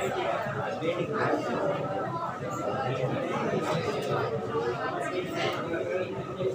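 Indistinct talking, with several voices overlapping like classroom chatter.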